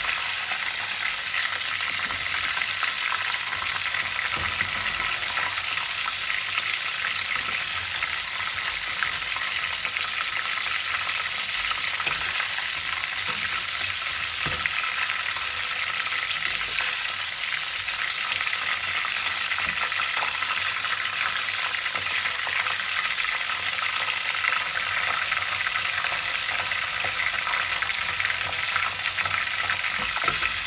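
Battered salt cod (baccalà) pieces deep-frying in a pot of hot oil: a steady, dense sizzle full of fine crackles.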